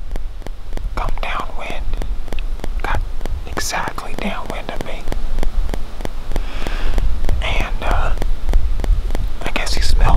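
A man whispering close to the microphone through a cloth face mask, in short breathy phrases with pauses, over a low steady rumble.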